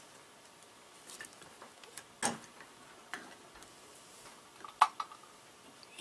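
A few light, separate clicks and taps of small metal hardware being handled, such as a terminal bolt and washers turned in the fingers and set down. The loudest click comes a little over two seconds in.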